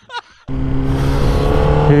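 A last short laugh from a laughing clip, then, about half a second in, an abrupt cut to a Honda CBR600RR's inline-four engine running steadily at low road speed through a Yoshimura exhaust, with wind rush on the helmet camera.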